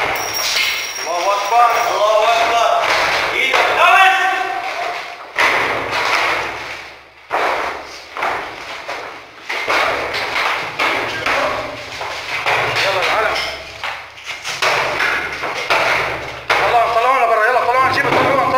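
Men's shouting voices with a series of heavy thuds and slams. Several sudden loud knocks come about five and seven seconds in, each dying away over a second or two, amid a noisy stretch before the voices return near the end.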